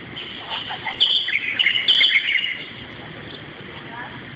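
Small birds chirping: a quick burst of short, high-pitched chirps about one to two and a half seconds in, over a steady background hiss.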